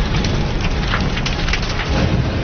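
Loud, steady noise of heavy rain, with several sharp knocks scattered through it.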